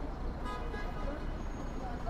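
City street ambience: a steady low traffic rumble with a couple of short horn-like toots.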